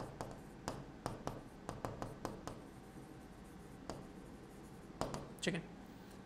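Chalk writing on a blackboard: a quick run of sharp taps and strokes, then quieter, with a single tap a little later.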